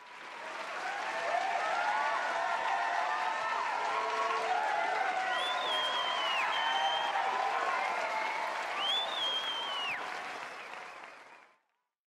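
Audience applause and cheering that swell in at the start and fade out near the end. Two long whistles rise and fall above the clapping, one about halfway through and one near the end.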